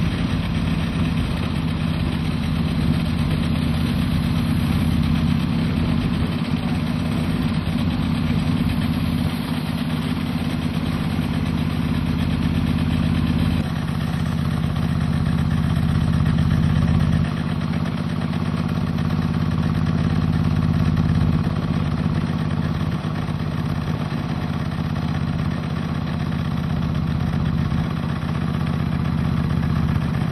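A motor vehicle's engine running steadily with a low drone, its note shifting slightly a few times.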